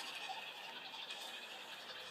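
Faint steady hiss of room tone, with no music and no distinct knocks or events.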